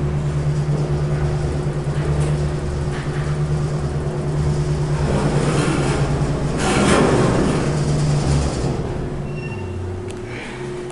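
Otis traction elevator car travelling in the hoistway: a steady low hum with rumble, and a rush of air that swells louder about two-thirds of the way through. The hum stops shortly before the end as the car slows and stops.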